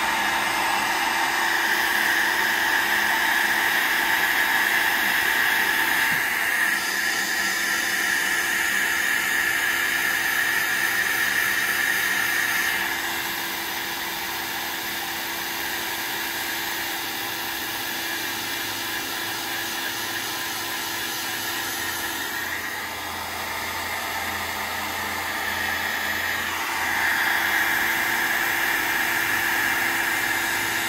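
Handheld dryer blowing steadily over wet watercolor paint to dry it; its sound drops a little a bit before halfway through and comes back up near the end.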